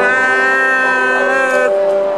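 A voice holding one long note for about a second and a half, rising slightly as it starts and then stopping, over sustained piano or keyboard chords.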